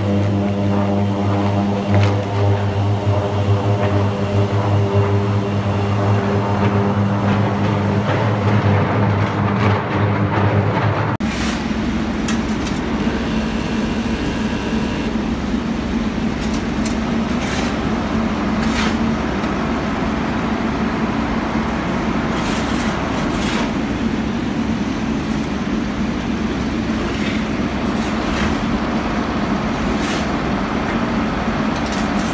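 Electric arc furnace melting with UHP graphite electrodes: a loud, deep buzzing hum with a rough crackle from the arcs. About 11 seconds in, the sound cuts to a steady roar of steelworks noise at the open furnace, with a few sharp knocks.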